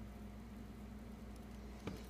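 Faint steady low hum with light hiss, the room tone of a workbench, and one small click near the end.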